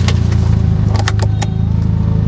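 A car's engine running at idle, a steady low hum inside the cabin. Over it come a sharp plastic click near the start and three quick clicks about a second in, as a smartphone is pressed into an Otoproject dashboard phone holder.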